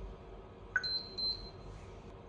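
A video intercom monitor's touchscreen sounds a short key-press click, then two short high-pitched beeps in quick succession.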